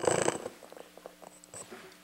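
A loud burst of shuffling and rumbling as people settle into chairs at the meeting table, picked up by the desk microphones, followed by scattered soft knocks and rustles.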